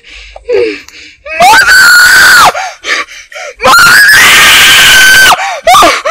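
A woman screaming: two long, loud screams held at a steady pitch, the first about a second and a half in and the second longer, near two seconds, with short, quieter cries and gasps before and between them.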